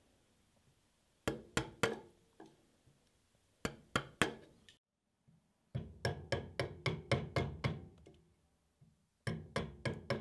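Chisel being struck in quick runs of sharp knocks, chopping and cleaning the walls of a drilled mortise in walnut. The runs break off with a short silence about halfway, then resume with a longer run of about ten strikes.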